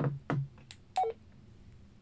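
Baofeng UV-5R handheld radio's key beep: one short, falling two-note tone about a second in, as the down-arrow key is pressed to step the frequency down by one 2.5 kHz step.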